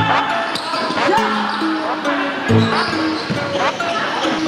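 Sneakers squeaking on an indoor futsal court in short sliding squeaks, with the thuds of the ball being kicked, over background music.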